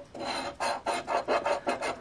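Edge of a large metal coin scratching the coating off a scratch-off lottery ticket: a quick run of rasping strokes, about six a second.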